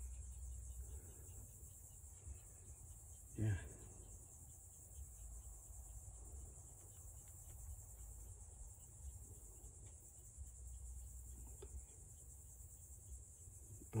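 A steady, faint, high-pitched chorus of insects buzzing without a break, over a low uneven rumble.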